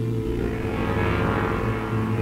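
Ambient post-rock instrumental: a steady, low layered drone of sustained electric-guitar tones played through an amp.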